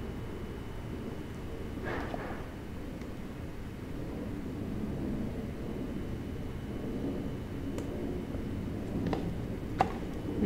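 Steady low background noise of a small room, with a few light clicks near the end.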